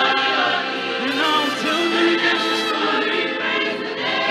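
Large mixed choir singing a gospel song in harmony, with held notes.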